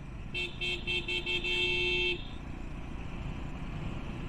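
A vehicle horn sounds four quick short toots, then one longer blast of most of a second. Underneath is the steady running, road and wind noise of the motorcycle being ridden.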